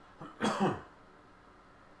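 A person clearing their throat once: a short rasp with a falling pitch, about half a second long.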